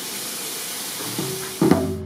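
Meat sizzling on a grill, a steady hiss. About a second and a half in, music with a held note and sharp struck percussive notes comes in over it.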